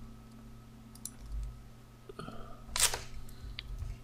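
Quiet room tone with a steady low electrical hum, broken by a few faint clicks and knocks and a short noisy rustle a little before the end.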